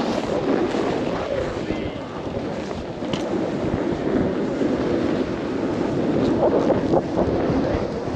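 Snowboard base and edges sliding and scraping over snow while riding downhill, with steady wind rushing over the camera microphone.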